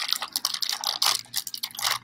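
Clear plastic mushroom grow bags crinkling and rustling as grain spawn is poured and shaken from one bag into another. Dense, irregular crackling, loudest about a second in.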